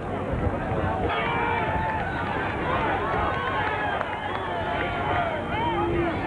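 Spectators at an outdoor football game talking over one another, several voices overlapping into a general chatter.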